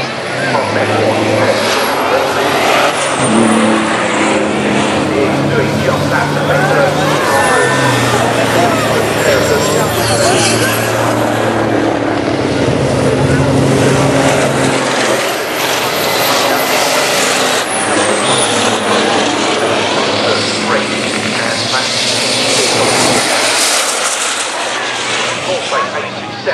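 Diesel engines of racing trucks running hard as the trucks pass along the circuit, their pitch stepping up and down. A high whistle sits over them and dips briefly several times.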